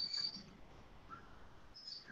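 A quiet pause with a faint, short high-pitched chirp at the start and another, softer one near the end.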